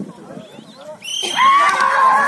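Crowd murmur, then about a second in a loud, shrill, long-held yell from the crowd as the racing bulls are released.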